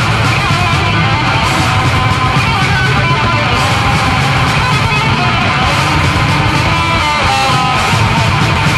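Instrumental passage of a German speed/thrash metal song: fast distorted electric guitar riffing over drums and bass, with no vocals.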